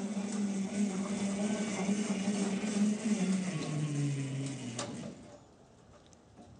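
Electric drive motor of the Miastrada Dragon prototype tractor humming steadily as it moves, its pitch stepping down twice past the middle, then dying away after a sharp click near the end.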